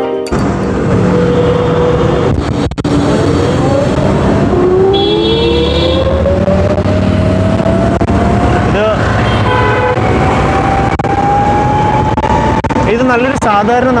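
Ather 450 electric scooter on the move: a steady rush of road and wind noise, with a whine that climbs slowly in pitch as the scooter gathers speed. A vehicle horn sounds briefly about five seconds in.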